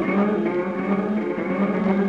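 A sample from a KESAKO Player played through a Verbos 288v Time Domain Processor, a multi-tap delay module, comes out as a steady electronic drone with many overtones, held on one low note.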